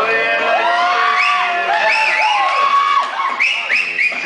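Audience whooping and cheering over the dance music, a string of rising-and-falling whoops one after another.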